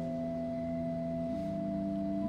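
Pipe organ playing slow, soft held chords of pure, flute-like tones, the chord changing about a second in.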